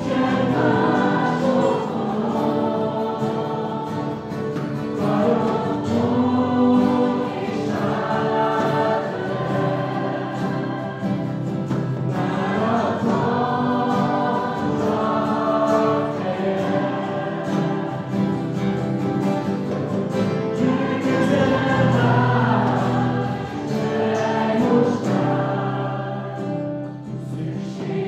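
A group of men and women singing a worship song in Hungarian together, accompanied by several strummed acoustic guitars.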